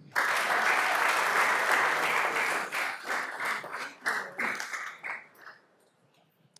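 Audience applause: a dense burst of clapping for nearly three seconds that thins to scattered claps and dies out about five seconds in.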